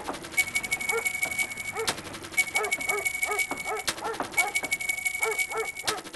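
A dog barking over and over in short calls, about two a second. Behind it is a high, fast ticking with a steady tone that runs in stretches of about a second and a half, with short breaks between them.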